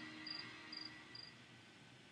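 The tail of an instrumental backing track fading out: a faint held chord dying away, with a short high note repeating about two or three times a second.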